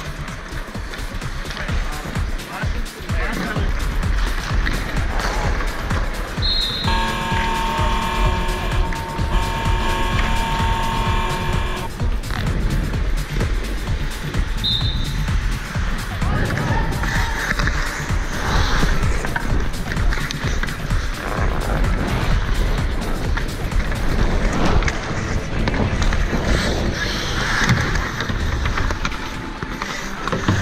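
Ice hockey skates scraping and carving on the ice, with stick blades brushing and tapping the ice, through a continuous scratchy rink noise. A short, high whistle blast sounds about fifteen seconds in.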